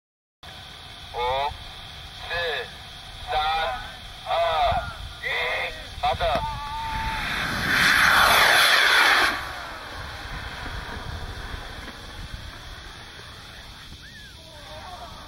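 Voices call out a countdown, six shouts about a second apart, then a small rocket's motor fires with a loud hissing whoosh lasting about two seconds, the loudest sound, before it dies away as the rocket climbs.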